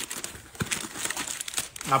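Crinkling and rustling handling noise close to the microphone, a scatter of small irregular crackles.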